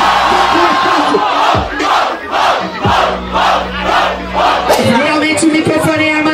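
A large crowd of rap-battle spectators screaming after a rhyme lands, then shouting together in rhythm about twice a second. Near the end a man's voice cuts in.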